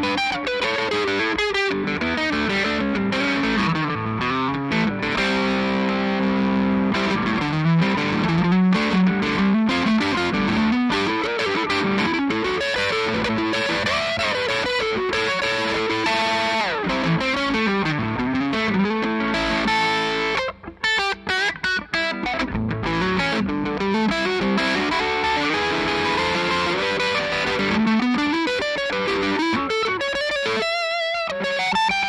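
2006 Gibson Vegas Standard semi-hollow electric guitar played through an amplifier: single-note lines and held notes, a sliding note about halfway through, and short clipped chords with gaps between them about two-thirds of the way in.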